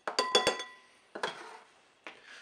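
A metal spoon, a tin can of wet cat food and a ceramic bowl clinking together as food is spooned out: a quick run of sharp clinks in the first half-second, one of them ringing briefly, then a softer knock just over a second in.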